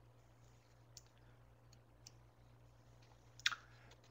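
Quiet room tone with a steady low hum, broken by a few faint clicks and a louder, short cluster of clicks about three and a half seconds in.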